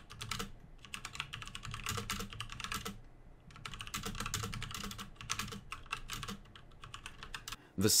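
Typing on an Aukey KM-G4 mechanical keyboard with brown switches: a fast, steady run of key clacks, with a brief pause about three seconds in.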